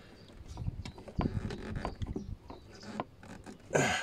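A 4 mm silicone vacuum hose being worked by hand onto a small plastic T-piece: uneven rubbing and creaking of the rubber on the fitting, in several short stretches, with a few small clicks.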